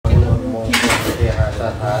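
A man's voice intoning a Thai ceremonial blessing invocation, with a short bright clatter of something clinking about three-quarters of a second in.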